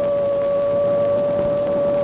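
The AN/PPS-5 ground surveillance radar's target audio signal, heard as a steady mid-pitched tone with a fainter overtone above it. It is the characteristic tone of a moving Jeep.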